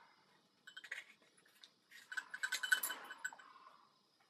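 Rubber breathing hose being unscrewed from the threaded metal chin port of a GP-5 gas mask: a few clicks about a second in, then a quick run of scraping clicks and squeaks.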